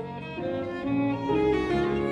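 Piano trio playing classical chamber music: violin and cello with a Steinway grand piano, the notes moving in steps and growing louder.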